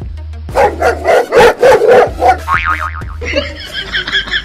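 Angry dog barking in a rapid string for about two seconds, starting about half a second in, over background music with a steady bass. A short wobbling comic sound effect follows.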